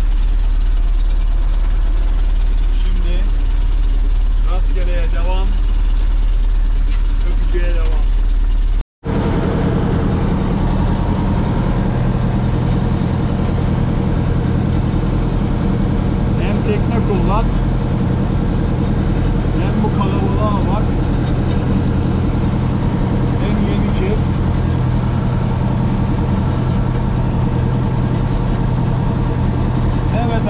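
Boat engine idling steadily. It drops out for a moment about nine seconds in and comes back with a slightly different tone, with faint voices under it.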